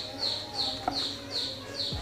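A bird chirping over and over, short chirps falling slightly in pitch at about three a second, over soft steady background music.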